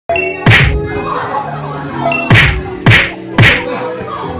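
Four sharp whacks, one about half a second in and three close together in the second half, over background music.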